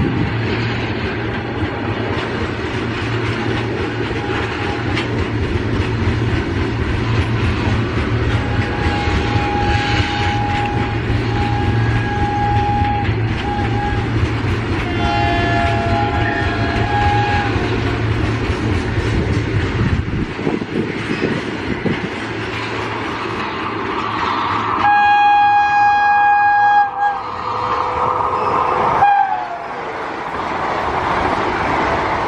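Vande Bharat Express sounding its horn again and again as it approaches at speed: short blasts at first, then a longer two-tone call, and about 25 seconds in the loudest, longest blast. Near the end the trainset rushes past, and the horn's pitch drops as it goes by. A steady low rumble of rolling stock underlies roughly the first two-thirds.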